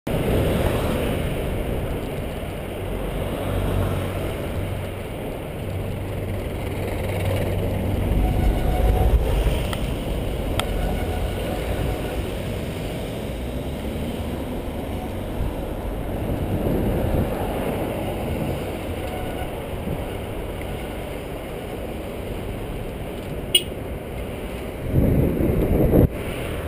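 Road traffic noise of cars on a city street, heard from a moving rider's camera, as a continuous low rumble. There is a brief sharp click near the end.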